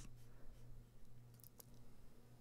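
Near silence: room tone with a faint steady low hum and a couple of faint clicks about one and a half seconds in.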